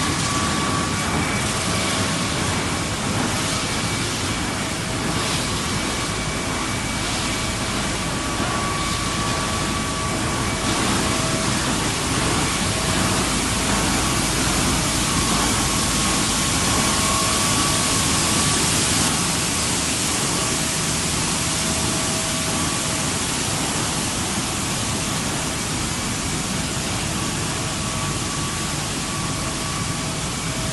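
Wood pellet production line machinery running: a loud, steady mechanical noise with a faint high whine on a few pitches that comes and goes.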